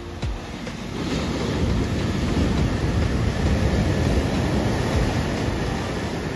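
Ocean surf: waves breaking against a rock outcrop and whitewater rushing around the shallows. The rush swells to a loud, steady roar of water about a second in.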